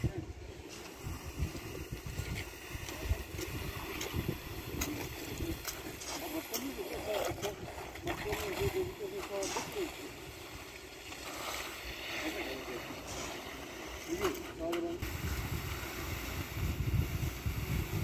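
Wet concrete being spread and smoothed by hand with a long-handled float and a hoe, giving scraping and sloshing with scattered knocks. Indistinct voices and wind on the microphone are mixed in.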